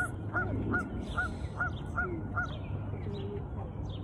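A bird calling in a quick, regular series of short, arched calls, about four a second, that stops a little past halfway through.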